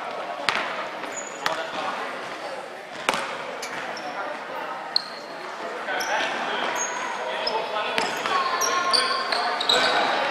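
A basketball bouncing on a timber gym floor, a few sharp echoing bounces in the first three seconds, with short high sneaker squeaks on the court throughout.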